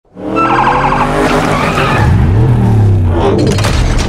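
Car sound effects: an engine revving, its pitch rising and falling, over tyre skid noise. Near the end a quick run of sharp mechanical clicks and clanks starts as the police car begins transforming into a robot.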